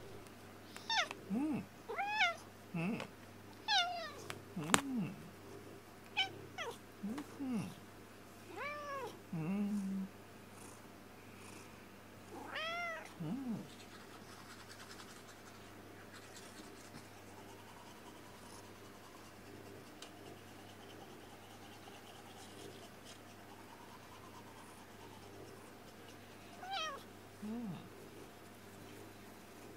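Cat meowing in short calls that rise then fall in pitch, about ten in the first half, then one more near the end, over a steady low hum.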